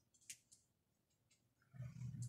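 Near silence: a pause in a man's talk, with a few faint clicks and a soft low hum near the end.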